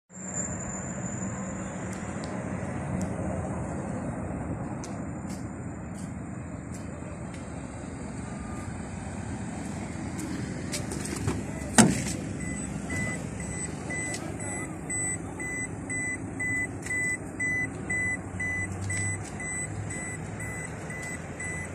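Van door latch opening with one sharp clunk. About a second later a warning beep starts, repeating about one and a half times a second: the door-open reminder of a Toyota Hiace with the key left in the ignition.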